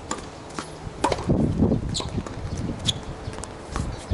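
Tennis rally on a hard court: a series of sharp, short pops from ball strikes and bounces, about one a second, with footsteps and low rumbling noise underneath.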